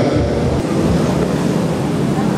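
Steady background noise of a large hall, an even rumble heaviest at the low end, with a slightly stronger low thud in the first half second and no speech.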